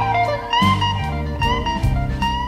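Modern electric blues band playing an instrumental passage: a lead guitar bending notes over bass and a steady drum beat.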